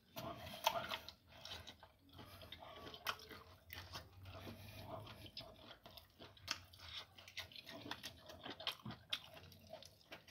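A person chewing and biting into a large piece of roasted meat close to the microphone, with irregular wet mouth clicks and crackles throughout.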